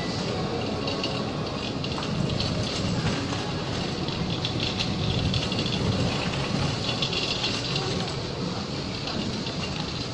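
Steady supermarket background noise: a constant wash of indistinct shoppers' voices and store noise, with no single standout sound.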